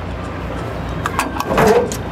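Latch on the side door of an enclosed car-hauling trailer being worked by hand: a few sharp metallic clicks and a short clank from about halfway through, over a low steady rumble.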